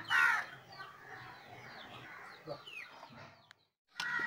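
A short falling call at the start, then faint, scattered chirping bird calls over a low background hum. The sound cuts off to dead silence shortly before the end.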